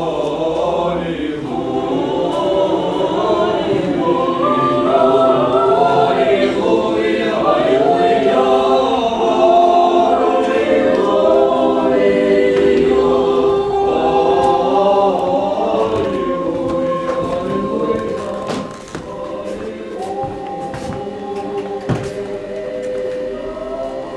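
Orthodox church choir singing liturgical chant a cappella, several voices in harmony. The singing swells through the middle and turns softer about three-quarters of the way through, with a few light clicks near the end.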